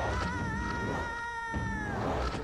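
Dramatic film background score: a sustained, high pitched tone with several overtones that wavers slightly and then slides down in pitch near the end, over a low rumble.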